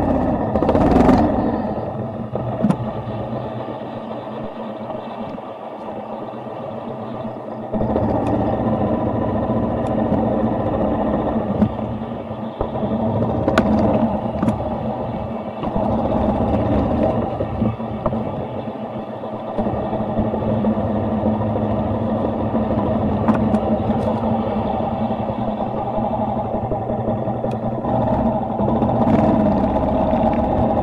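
Motorcycle engine running steadily while riding slowly, its loudness stepping up a few times as the throttle is opened, such as about eight seconds in.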